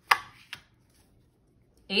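Tarot cards being handled as a card is drawn from the deck and laid down: a sharp card snap just after the start, then a lighter tap about half a second later.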